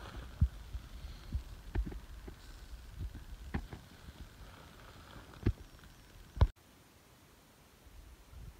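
Irregular low thumps and rumble on an outdoor microphone, like wind buffeting or handling of a handheld camera. It cuts off sharply about six and a half seconds in, leaving only a faint background.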